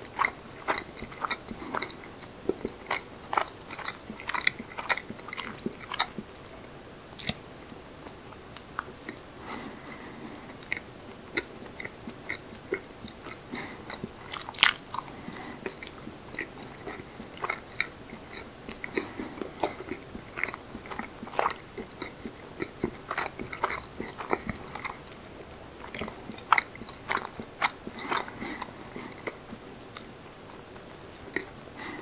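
Close-miked chewing of soft steamed rice cakes (jangijitteok, leavened with rice wine, with a sweet red bean filling): a run of small mouth clicks and smacks. They come thickest in the first few seconds and again in the last third, sparser in between, with two sharper, louder clicks in the middle.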